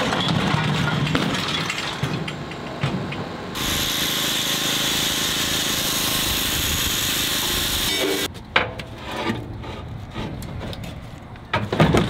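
Power tool cutting through metal during demolition of old deck fittings: a loud, steady hiss that starts abruptly about three and a half seconds in and stops abruptly about eight seconds in. Before it there is lower rumbling work noise, and after it a few sharp metallic knocks.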